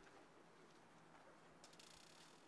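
Near silence with a faint background hiss, and a brief run of rapid, faint high-pitched ticking near the end.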